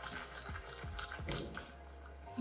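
Silicone garlic peeler tube rolled under the palms on a wooden cutting board with garlic cloves inside. Faint soft rustling with a few small clicks as the papery skins loosen.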